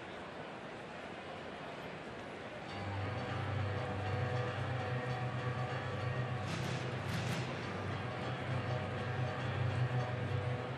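Ballpark crowd murmur, then from about three seconds in, bass-heavy music over the stadium PA between pitches, with two short sharp sounds near the middle.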